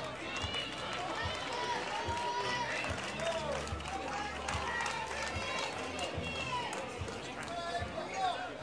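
Many voices overlapping: young ballplayers calling out and spectators chattering, with short rising and falling calls throughout and scattered low thumps underneath.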